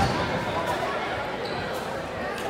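Spectators talking over one another in a gymnasium, with a basketball bouncing on the hardwood court a few times.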